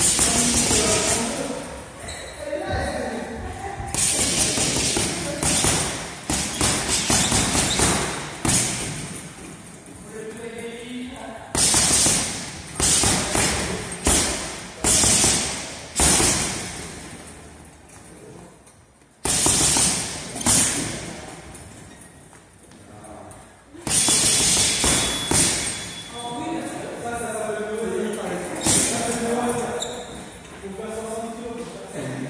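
Boxing-gloved punches landing on a heavy punching bag, each one a sharp thud, thrown in several quick flurries with pauses of a few seconds between them.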